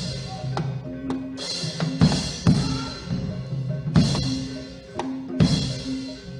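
Gamelan accompaniment for kethoprak: drum strokes and several bright crashing hits over steady ringing metallophone notes.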